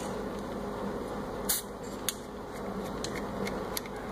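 Small handling sounds of a brass pump fitting being disconnected from a suspension fork's air valve: a few light clicks and one short hissy burst about a second and a half in, over a steady low room hum.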